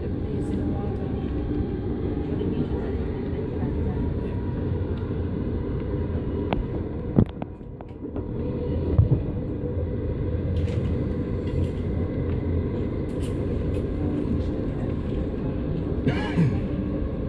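Steady low rumble of a passenger train carriage running along the rails, heard from inside. A couple of sharp knocks come about seven and nine seconds in, with a brief quieter stretch between them.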